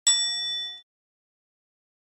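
A single bright bell ding sound effect for the notification bell icon being clicked; it rings for under a second and then cuts off.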